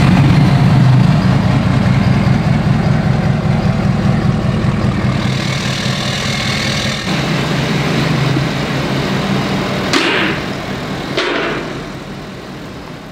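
The 6.7 L Power Stroke turbo-diesel V8 of a 2019 Ford F-350 idling steadily just after start-up, its fuel system freshly primed after a fuel filter change. The sound changes a little about seven seconds in and gets softer near the end.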